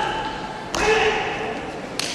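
Short, sharp shouts (kihap) from taekwondo competitors performing a poomsae: the tail of one shout, then a second loud shout about three-quarters of a second in that fades over about a second, echoing in a large hall. A light snap comes near the end.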